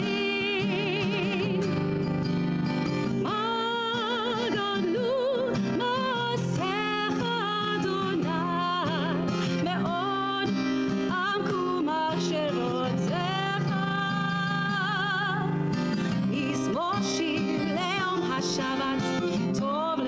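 A woman singing a slow melody with held notes and vibrato, accompanied by acoustic guitar.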